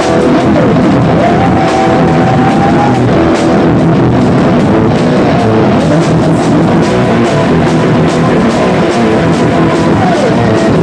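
Rock band playing loud live, with a drum kit and cymbals heard close up from beside the kit, and an electric guitar. A falling guitar slide comes just after the start, and a high note is held around two seconds in.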